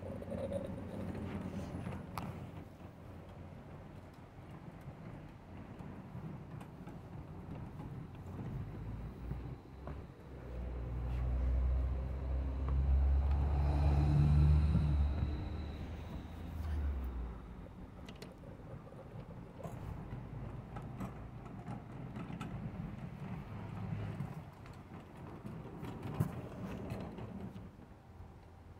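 Mamod SL1 live-steam model locomotive running along the track with its wagons: a low rumble that swells in the middle and is loudest about halfway through, with scattered light clicks and knocks.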